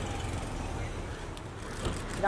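Low steady rumble of a car idling close by, with faint voices in the background.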